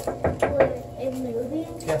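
A few quick sharp knocks in the first half second, then a person's voice with a gliding pitch.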